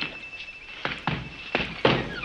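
Boots striking a hard floor in a few sharp thuds as a soldier turns on the spot on command. A faint high note is held through the first half.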